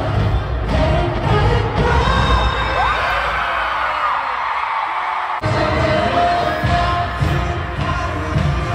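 Live K-pop concert music filling a stadium, heard from the stands with a crowd cheering over it. About halfway through the bass drops away for a couple of seconds, then the full sound comes back abruptly.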